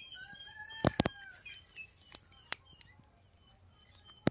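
A rooster crowing once, one long arching call in the first second and a half, with a few sharp clicks and faint chirps of small birds.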